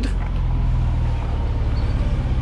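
Renault Clio V6's mid-mounted 3.0-litre V6 engine running at low revs as the car creeps forward at walking pace, a steady low note with rapid, even firing pulses.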